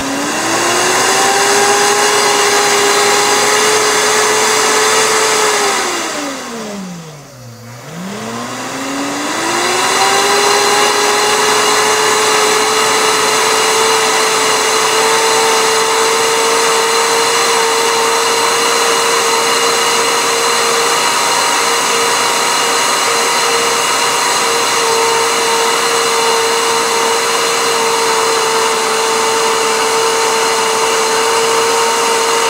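Princess House Vida Sana blender motor grinding coffee beans with cinnamon on its smoothie setting. It spins up to a steady high whine, slows almost to a stop about six to eight seconds in, then spins back up and runs steadily.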